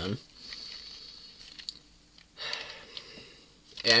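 One loud breath through the nose about two and a half seconds in, fading out over about a second. A few faint clicks of a plastic toy car being handled come before it.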